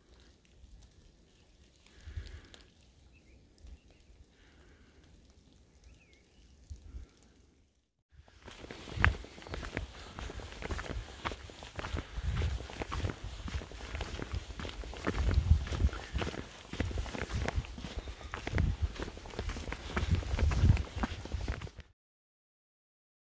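A hiker walking a trail of wet dead leaves, boots crunching and scuffing with each step, with uneven low thumps and rumbles on the microphone. For the first several seconds there is only faint, quiet woods; the walking starts suddenly after that.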